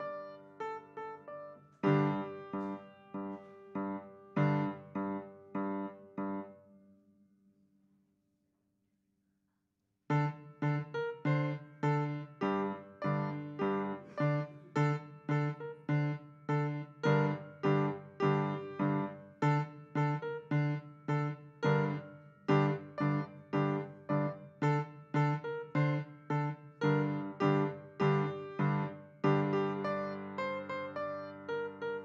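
A digital piano playing a slow beginner piece. The notes die away about seven seconds in, then after a two-second silence an even run of notes resumes at about two a second.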